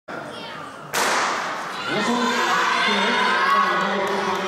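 A starting gun fires once about a second in, its report echoing through a large indoor athletics hall. It sets off a sprint race. Spectators then shout and cheer the runners on.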